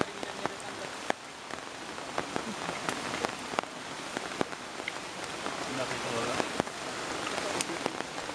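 Steady rain falling on rainforest foliage, an even hiss with scattered sharp clicks of drops.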